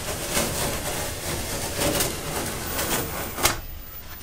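Self-adhesive vinyl decal being peeled off a wall: a continuous rasping noise as the adhesive lets go, with a short sharper sound about three and a half seconds in as it comes free, then quieter.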